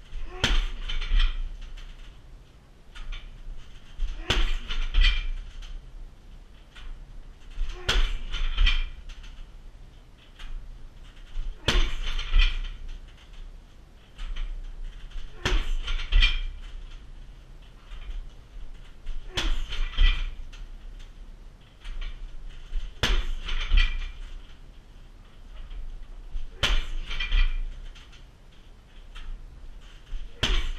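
Eight Muay Thai shin kicks landing on a heavy 60 kg punching bag, one sharp thud about every four seconds, each followed by about a second of rattling from the bag and its stand.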